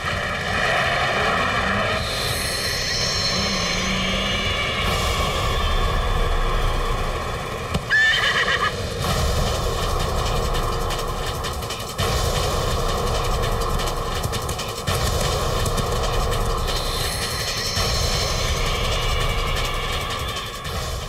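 A horse galloping, its hooves pounding steadily, with a whinny about eight seconds in.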